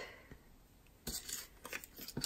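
Faint rustling and light scuffs of paper and card being handled on a scrapbook page: photos and a paper tag slid into place, with a few soft clicks starting about a second in.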